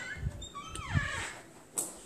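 A brass door knob turned and a door opened, with dull thumps of handling and a click near the end. Around the middle comes a short falling whine.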